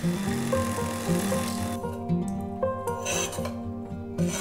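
Electric hand mixer running through thick mashed potatoes, a dense whirring rasp that stops suddenly about two seconds in. Background music plays throughout.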